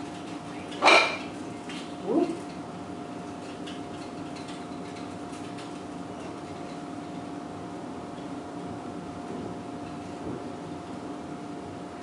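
Steady faint hum of room tone. About a second in, a short sharp sound, and a second later a brief rising squeak.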